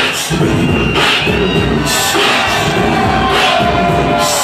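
A hip-hop beat performed live, with a steady rhythm of low kicks and sharp high hits, over a cheering crowd; a held tone comes in about halfway.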